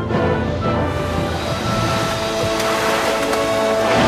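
Orchestral film score with held string chords. A wash of noise joins about a second in and runs under the music.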